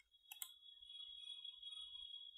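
Near silence, with a faint click about half a second in, followed by a faint, steady high-pitched tone that holds to the end.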